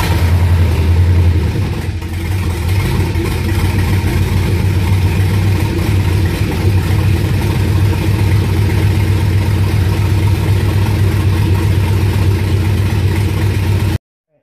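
LS V8 engine in a swapped Ford Ranger running just after start-up, a little louder for the first couple of seconds and then settling to a steady idle, heard from inside the cab.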